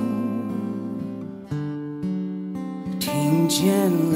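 A slow pop song between sung lines: held instrumental chords with acoustic guitar, the singing voice coming back in about three seconds in.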